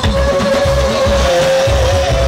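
Live band music with a steady, pulsing bass beat and one long held note over it.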